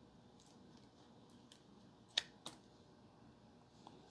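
Two short, sharp plastic clicks about two seconds in, a quarter second apart, as a sleeved trading card is pushed into a clear plastic card holder; otherwise near silence.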